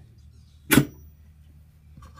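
Metal mandrel seating into a wood lathe's headstock spindle: one short, sharp metallic knock about three quarters of a second in, with a brief faint ring after it.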